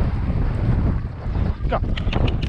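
Wind buffeting the microphone of a camera worn by a rider moving at speed on horseback, a heavy uneven rumble. Near the end there is a brief pitched, voice-like sound.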